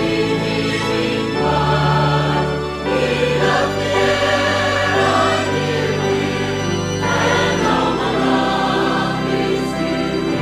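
Church choir singing a hymn in parts, with held notes over a sustained low instrumental accompaniment.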